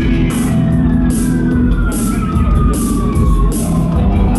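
Live rock band playing: a steady beat with cymbals, bass holding a low note, and a high tone sliding slowly and smoothly down in pitch throughout.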